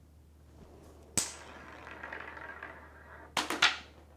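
A steel ball is let go with a sharp click about a second in, then rolls along the rail for about two seconds. Near the end comes a quick cluster of sharp metallic clacks as it strikes the magnet and the row of steel balls, a magnetic-rail collision that knocks the end ball on.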